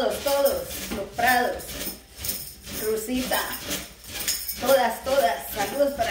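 A person's voice with jingling percussion throughout.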